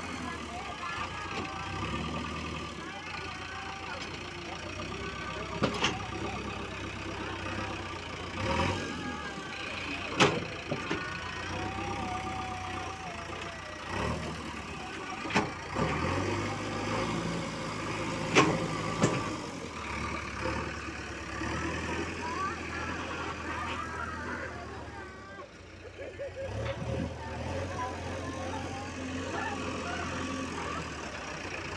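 JCB loader's diesel engine running steadily as its bucket pushes soil, with several sharp knocks, the loudest about ten and eighteen seconds in.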